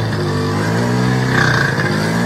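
Small moped engine running with the throttle held open, its pitch wavering slightly. The moped keeps trying to stall and has to be kept on the throttle to stay running.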